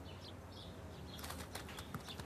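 Quiet garden ambience with faint bird chirps, and a quick run of soft flutter-like ticks in the second half.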